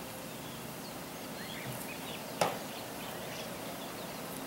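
Outdoor ambience with a steady low hiss and faint, short bird chirps, broken by one sharp click a little past halfway.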